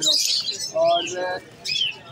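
Caged birds chirping: a burst of shrill chirps at the start, then a couple of short falling squeaks.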